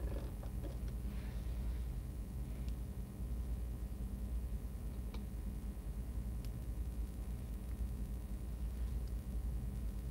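Quiet room tone: a steady low hum with a few faint, light clicks of small objects being handled.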